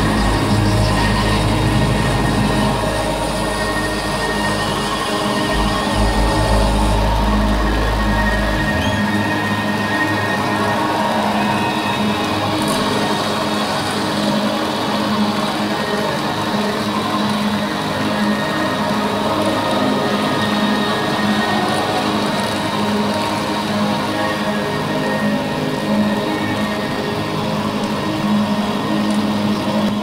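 A live rock band plays a sustained, droning outro of held tones. A deep bass note cuts out about nine seconds in, leaving a steady drone to the end.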